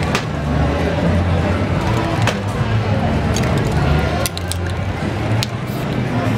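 Several short, sharp clicks and clinks of spray-paint cans and tools being handled on the table. Under them runs a steady background of crowd chatter and low rumble.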